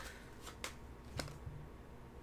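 A few faint, sharp clicks of tarot cards being handled.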